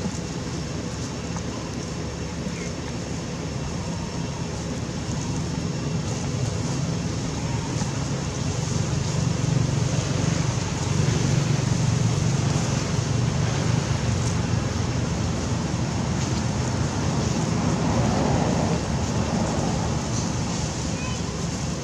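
Steady outdoor background rumble with an even noise haze, swelling slightly about halfway through.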